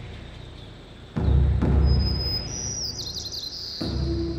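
A deep drum struck slowly, one beat every two and a half seconds or so. One booming beat comes about a second in and another just before the end, each ringing out over a second or more.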